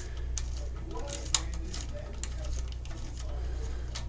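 Faint small clicks and scraping of a screwdriver tightening a wire into a screw terminal on an alarm panel's circuit board, with one sharper click about a third of the way in, over a steady low hum.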